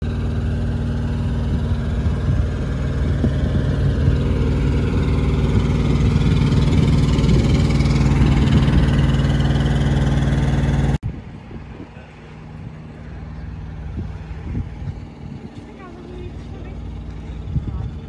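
Semi-truck diesel engine idling close by, a steady low rumble. About eleven seconds in it cuts off abruptly, leaving a much quieter background with faint voices.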